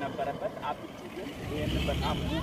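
A man talking, with the low rumble of a car driving past that swells near the end.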